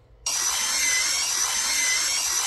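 Cordless drill driving a sheet-metal cutter attachment through metal roofing sheet: a steady high-pitched cutting whir that starts suddenly a quarter second in. It is heard thinly, with no low end, through a phone's speaker.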